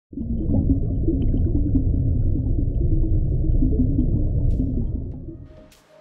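Deep, muffled intro sound under a channel logo, with a faint wavering tone low in the mix; it fades out over the last second.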